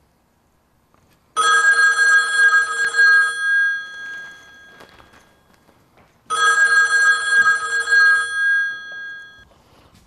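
Landline desk telephone ringing twice, each ring about two seconds long, the two rings about five seconds apart.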